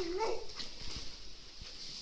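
A baby's short whiny hum made with a feeding bottle in her mouth, ending about half a second in.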